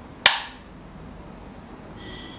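A single sharp plastic click about a quarter second in, as an AA rechargeable cell snaps into a slot of a Panasonic BQ-CC61 charger, then only low room tone.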